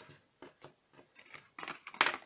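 A deck of oracle cards being shuffled and handled by hand: a handful of short, crisp card snaps, the loudest near the end.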